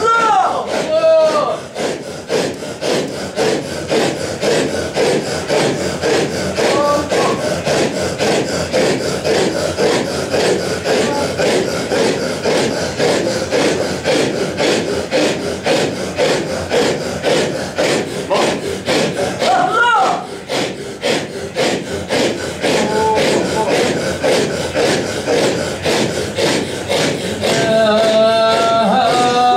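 A circle of men chanting Sufi dhikr together as a rhythmic, rasping breath from the chest (the 'imara' of a hadra), a steady sawing-like pulse. A single voice calls out briefly at the start and again about twenty seconds in.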